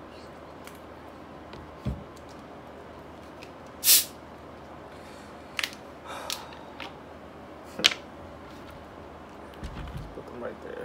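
Small handling and eating noises while bananas are peeled and eaten: a low thump about two seconds in, a short loud hiss near four seconds, and a few sharp clicks and rustles after.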